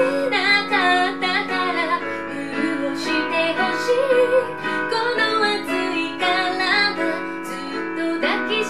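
A woman singing while accompanying herself on a Roland FP-50 digital piano.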